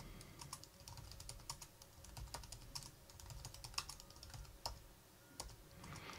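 Faint, irregular keystrokes on a computer keyboard as short commands are typed.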